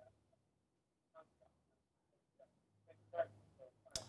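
Near silence on a pause in a phone interview, with a few faint, brief sounds scattered through it, the loudest a little after three seconds.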